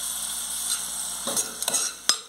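Sliced onion and crushed garlic sizzling in hot oil in a metal pot. A metal spoon scrapes and stirs against the pot in the second half.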